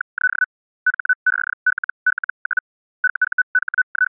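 Morse code sent as a single high-pitched tone keyed on and off: quick runs of short dots and longer dashes, in groups with brief pauses between characters.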